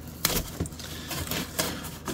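Foam masking tape being pulled from its roll and handled: a few short crackles and rustles as the strip peels away and is pressed onto a cardboard box edge.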